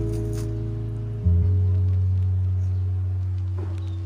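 Background music of slow, sustained notes: a new low chord comes in about a second in and slowly fades away.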